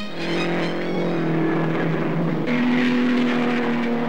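Vintage open-wheel racing car engines running hard at speed, a steady engine note whose pitch jumps up about two and a half seconds in, heard on an old newsreel soundtrack.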